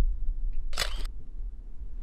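A phone camera's shutter sound, once, about three quarters of a second in, over a steady low hum.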